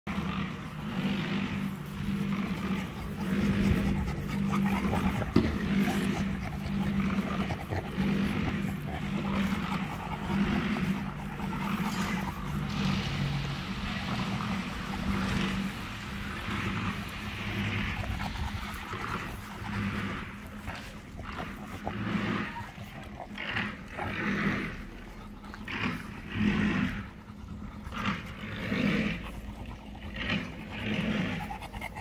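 Shar-pei puppies growling as they play over a toy: a low, continuous growl at first, breaking into short growls about once a second near the end.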